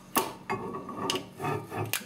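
Steel rear axle shaft being slid into a Ford 7.5 axle tube through the bearing and seal: a sharp knock just after the start, then irregular scraping and rubbing of metal as the shaft is fed in.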